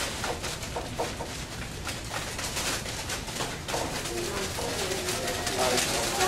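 Paper bags crinkling and rustling as a room of students shake and tilt them, the small objects inside shifting about, with low voices murmuring underneath.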